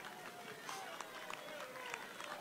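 Faint, scattered hand claps from a few people in an outdoor crowd, single claps here and there starting about half a second in.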